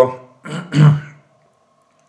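A man clearing his throat once, a short voiced sound about half a second in.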